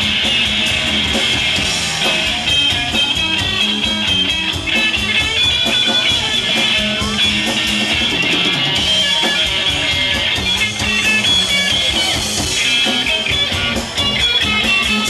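A rock band playing live, an instrumental stretch with electric guitar to the fore.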